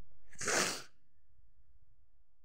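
A single short, sharp burst of breath from a person, sneeze-like, about half a second in and lasting about half a second.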